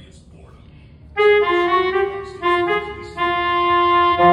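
Background music: after a quiet start, a melody of held notes enters about a second in and carries on.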